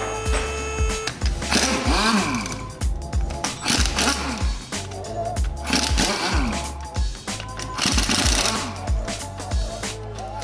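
A pneumatic impact wrench undoes the wheel bolts in four bursts of about a second each, its hammering rattle rising and falling in pitch. Background music with a steady beat plays throughout.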